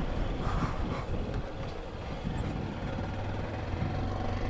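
Honda CG 160 Fan motorcycle's single-cylinder four-stroke engine running as the bike rides along, with a steady low rumble of engine, wind and road noise.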